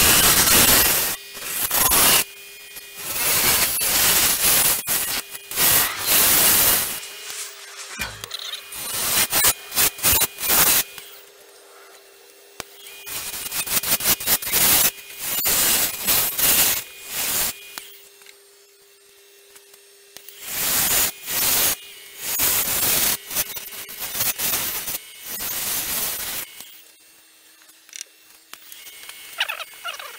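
A gouge cutting into a spinning sugar pine bowl on a wood lathe, hollowing out the inside: loud shaving cuts in repeated bursts of a second or two, with short pauses. Under them runs the lathe's steady hum, heard alone for a few seconds past the middle and near the end.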